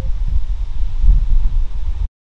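Wind buffeting the microphone: a loud, gusty low rumble that cuts off abruptly at the end.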